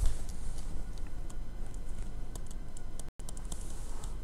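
Light, irregular clicks and taps of a stylus on a tablet screen as an equation is handwritten, over a steady low room hum. The sound cuts out completely for a moment about three seconds in.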